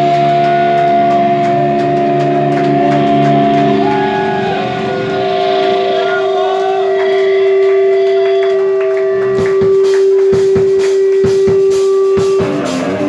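A heavy metal band's last chord rings out live with a long held guitar note, and voices shout over it. From about three-quarters of the way in, a run of drum and cymbal hits marks the end of the song.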